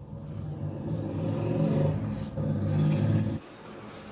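Electric sewing machine running as it stitches, a steady motor hum with a brief slack near the middle, then cutting off abruptly about three and a half seconds in.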